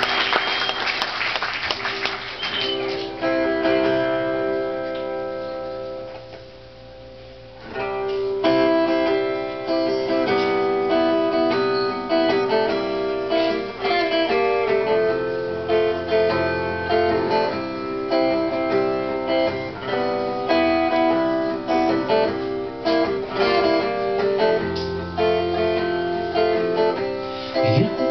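Solo acoustic guitar playing a song's instrumental intro, as applause dies away in the first few seconds. Picked notes ring out and fade, then steady strummed chords start about eight seconds in.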